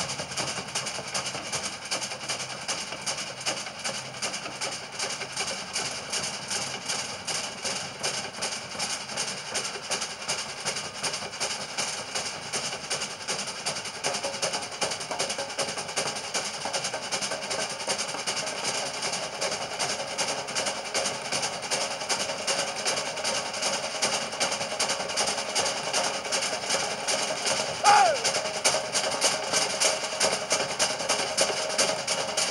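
Drummers playing a fast, steady rhythm of quick strikes to accompany a Samoan fire knife dance. A short, loud sound rising in pitch stands out about two seconds before the end.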